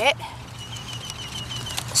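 A bird giving a faint, rapid series of short, even high chirps, about seven a second.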